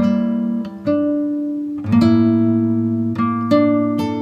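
Background music: an acoustic guitar playing plucked notes and chords, each ringing out and fading before the next.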